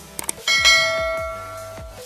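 Two quick clicks, then about half a second in a bright bell chime that rings and fades away over about a second and a half: the sound effect of an animated subscribe-and-notification-bell button, over background music.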